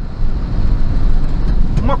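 Truck engine running steadily with road noise, heard from inside the cab while driving.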